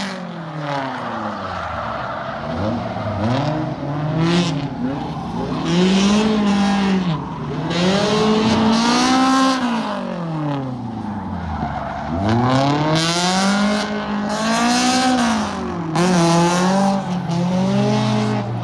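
A car engine revving up and falling back again every few seconds as the car is driven hard, with bursts of tyre squeal.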